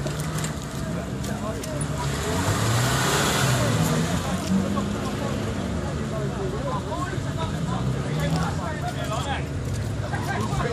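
A small Suzuki SJ-type 4x4's engine revving up and down as it crawls through a deep, muddy water hole, with a louder rush of noise about two to four seconds in. People talk in the background.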